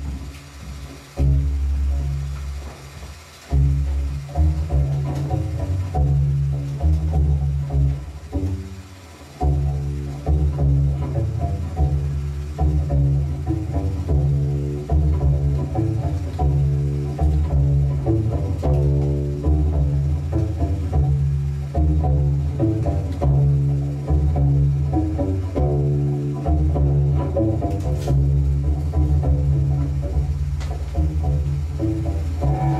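Solo cello playing a repeating pattern of short, low notes. It stops briefly a few times in the first ten seconds, then plays on steadily.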